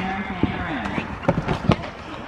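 Horse cantering on arena sand, hoofbeats thudding, with a quick group of three strikes in the second half, under people's voices.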